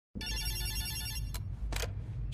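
Old rotary telephone bell ringing once, a rapid trilling ring lasting about a second, then a click and a short clatter as the handset is picked up.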